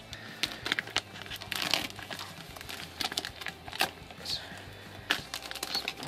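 Plastic poly mailer bag being torn open and crumpled by hand, a run of irregular crinkles and rips.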